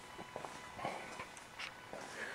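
Faint footsteps and a few soft, scattered knocks on a concrete shop floor, in an otherwise quiet room.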